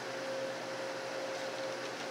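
Steady hum and hiss of refrigerated drink coolers' fans and compressors, with one constant mid-pitched tone.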